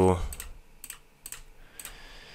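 A handful of short, sharp computer clicks, about six spread over two seconds, as 29 × 29 is entered into a computer calculator.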